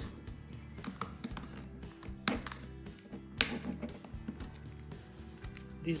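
Small screwdriver prying at the snap-fit clips of a Sony remote control's plastic case: scattered light plastic clicks and taps, with two sharp clicks about a second apart near the middle, over soft background music.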